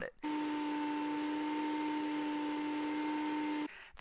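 Blendtec high-power blender motor, which has a 3-horsepower rating, running at full speed. It makes a loud, steady whine that starts abruptly just after the start and cuts off sharply about half a second before the end.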